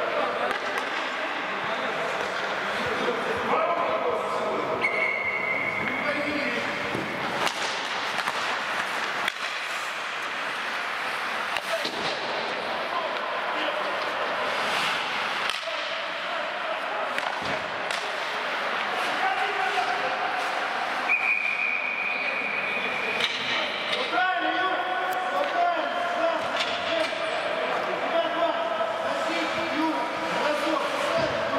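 Ice hockey play: hockey sticks and puck knocking and clacking over a steady wash of skate and rink noise, with players shouting. Two long, steady, high whistle blasts, about five seconds in and again about twenty-one seconds in.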